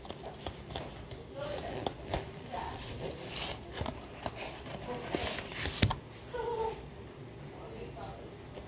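Rustling and light clicks of a stack of flipbook paper being handled, irregular throughout, with one sharper click about six seconds in.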